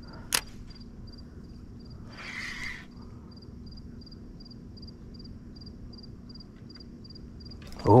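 Cricket chirping evenly, about three to four chirps a second, over a low steady hum. A sharp click comes just after the start and a brief rushing noise about two seconds in.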